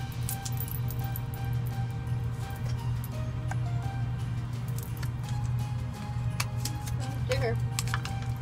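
Soft background music of held notes that change pitch every second or so, with scattered light clicks and rustles of a paper envelope and card being handled.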